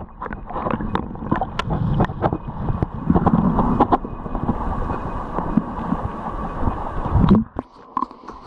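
Stream water heard through a camera held underwater: a muffled, churning water noise with frequent clicks and knocks. It cuts off about seven and a half seconds in as the camera comes out of the water.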